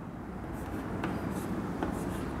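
Chalk writing on a chalkboard: faint scratching of the chalk, with a couple of light taps about a second in and near the end as characters are written.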